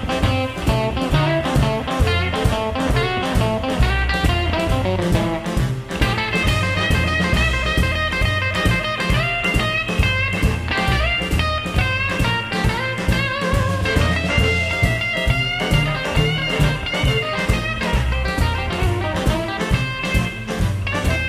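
Live rhythm-and-blues band playing an instrumental passage with no vocals: electric guitar over upright bass, drums and keyboard in a steady swinging beat. The sound fills out with more melody lines from about six seconds in.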